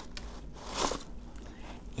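A cardstock drawer slid out of a handmade paper box by its pull handle: a brief papery scrape and rustle just under a second in, with a few faint clicks of handling.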